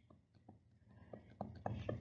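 Mostly quiet, with faint short clicks and a soft whispered or breathy voice picking up in the second half, just before normal speech resumes.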